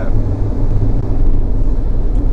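Steady low rumble of tyre, road and engine noise heard inside a car's cabin while driving through a motorway tunnel.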